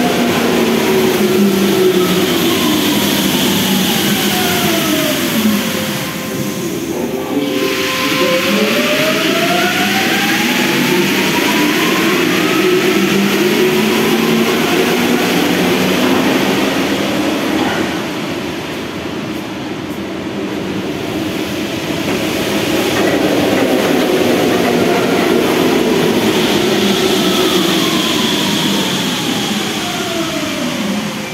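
RATP MP14 rubber-tyred métro trains moving through a station over a steady rolling rumble. Their electric traction whine falls in pitch as a train slows, holds on one note, then rises again as a train pulls away. Near the end another train's whine falls as it brakes into the platform.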